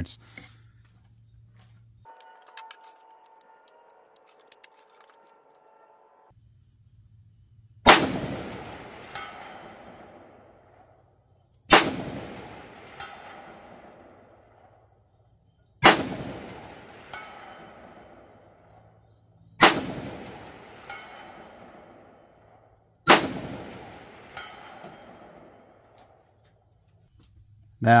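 Five rifle shots from a 7.62x39 rifle, fired about every three and a half to four seconds. Each sharp crack echoes and dies away over a couple of seconds.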